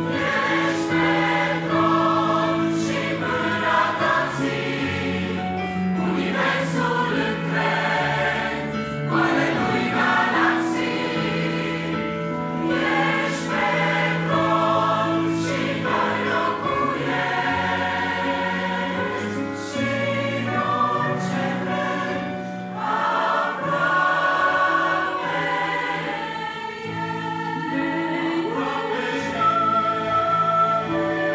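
Mixed choir singing a Christian song in sustained chords, accompanied by an electric piano.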